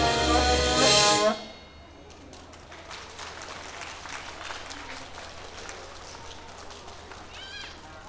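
A drum cover played along to a backing track with a sung vocal comes to an abrupt end about a second in. Scattered clapping from onlookers follows, with faint voices.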